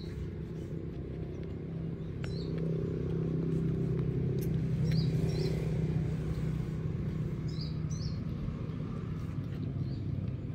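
Steady low hum of a running engine, like a nearby vehicle, growing louder toward the middle and easing off again, with a few short high chirps over it.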